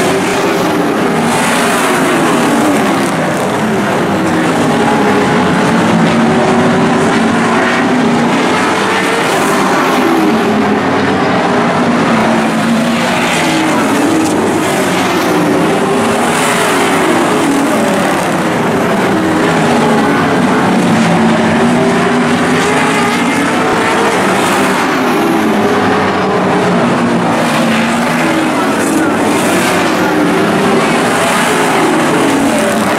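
A field of late model stock cars racing, their V8 engines rising and falling in pitch again and again as the cars pass and lift for the turns, several engines overlapping.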